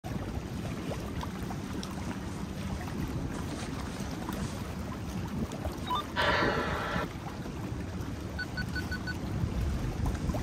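Wind on the microphone and water washing against a boat, with a low rumble underneath. About six seconds in there is a short, bright, noisy burst, and near the end five quick high beeps.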